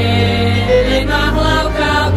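Slovak folk ensemble music: bowed strings with a steady double-bass line underneath and voices singing long held notes.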